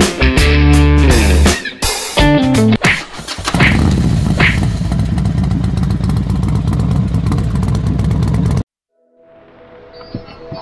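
Guitar music for the first three seconds, then a Yamaha NMAX scooter's engine running steadily for about five seconds before the sound cuts off suddenly.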